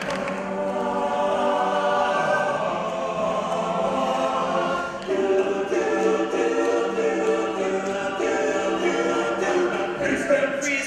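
All-male a cappella group singing in close harmony, holding sustained chords with no instruments; the chord shifts to a new one about halfway through.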